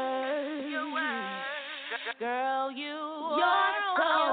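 A woman singing without accompaniment, in long held notes that waver slightly, with a brief break just after two seconds.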